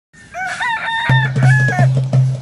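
A bird's crowing call in three phrases, the last one the longest. About halfway through, music comes in under it: a steady low bass note with regular percussion strikes.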